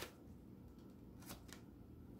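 Faint, brief rustles of an oracle card deck being shuffled by hand: a short stroke at the start, then two soft riffles about a second and a half in.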